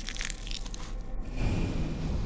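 Crunching, creaking sound of a bird's egg being squeezed in an egg-eating snake's gullet as the snake bears down on the shell with its backbone. The shell is under strain just short of cracking. A few sharp crackles come first, then a lower, louder creak about halfway through.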